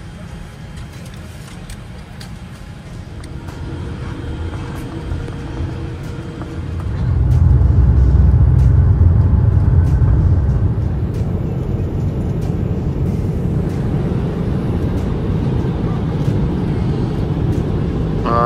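Airliner jet engines heard from inside the cabin: after some quieter cabin noise, a loud low rumble comes up sharply about six and a half seconds in and holds, as the aircraft powers up for takeoff.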